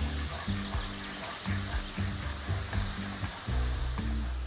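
A butter-and-flour roux sizzling in a hot frying pan as eel stock is stirred into it with a wooden spoon, a steady hiss, with background music underneath.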